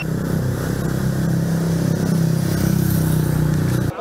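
Motorcycle engine running close by with a steady low note and a fine rapid pulse. It cuts off abruptly just before the end.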